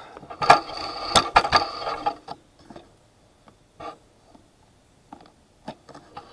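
Handling noise on a workbench as the fiberglass nosebowl and camera are shifted about: a cluster of knocks and scraping for about two seconds, then a few scattered light clicks.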